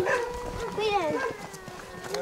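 Indistinct voices of people talking, in short snatches that fade in the last half-second.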